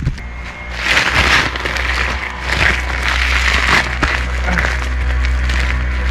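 A woven plastic sack rustling in irregular bursts as it is handled, from about a second in until about four seconds in, over steady background music.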